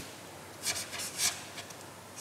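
A pen writing on card: several short strokes of the tip rubbing across the paper as a word is written.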